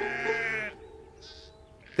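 A sheep bleating: one long bleat that ends just under a second in, followed by a fainter, shorter sound a little after a second in.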